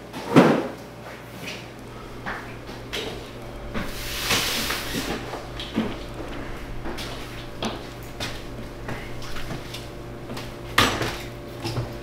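A loud bang shortly after the start, like a door or cupboard shutting, followed by scattered lighter knocks and clicks, a brief rushing noise about four seconds in, and another sharp bang near the end, over a steady low hum.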